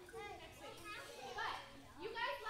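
Small children talking and calling out in high voices as they play in a group.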